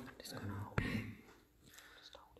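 A man's voice speaking softly for about a second, with a short click partway through, then a pause with only room tone.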